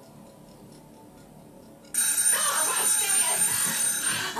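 A kitchen oven timer alarm goes off suddenly and loudly about two seconds in, ringing steadily after a quiet stretch. It signals that the cooking time is up.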